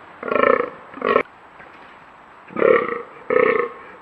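Fallow deer buck groaning in the rut: four deep, belch-like groans in two pairs, the second of the first pair short.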